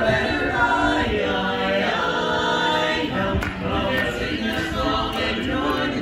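Men's barbershop quartet singing a cappella in close four-part harmony, holding chords and moving from one to the next.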